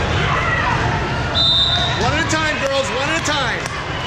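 Hall crowd noise throughout, with one short, steady whistle blast about a second and a half in, typical of a volleyball referee's whistle. After it come shouts and squeaky chirps, then a few sharp smacks of a volleyball near the end.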